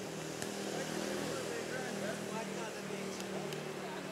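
A steady engine drone, with faint voices over it.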